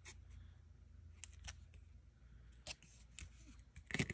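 Faint, scattered light clicks and taps of metal tweezers and scissors being handled while placing a small sticker on a planner page, the sharpest click near the end.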